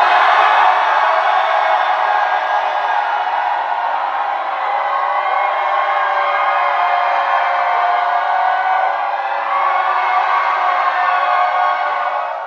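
Studio audience cheering and screaming steadily, a dense wall of many high voices with no music under it.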